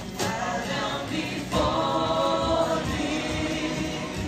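Live gospel worship singing: a group of singers on stage, amplified through the hall's speakers, leading the congregation, with one long held note in the middle.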